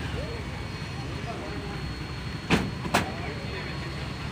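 A vehicle engine idling with a steady low rumble. A little past halfway through come two sharp knocks about half a second apart, the loudest sounds here.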